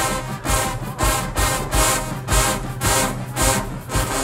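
Marching band playing a brass-led tune over a steady percussion beat, with strong hits about twice a second.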